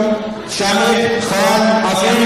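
A voice holding long, drawn-out notes in a chant-like way: two sustained notes, with a brief drop between them about half a second in.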